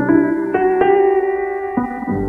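Spitfire Audio LABS Tape Piano, a lo-fi sampled upright piano on its Spliced Upright setting, playing sustained chords: a C add9 chord with added notes struck about half a second in and again shortly after, then a G major 7 (13) chord near the end.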